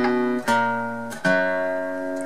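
Acoustic guitar with a capo on the second fret, played fingerstyle: picked notes struck near the start, about half a second in and again just after a second, each left to ring and fade.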